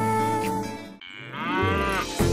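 Advertisement music ending, then a cow mooing about a second in: one long call that rises in pitch and then levels off.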